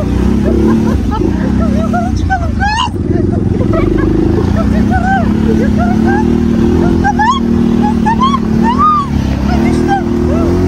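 ATV engine running as the quad drives across rough grass, its pitch rising and falling with the throttle, with wind rumble on the microphone.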